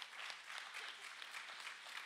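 Audience applauding: many hands clapping in a steady patter.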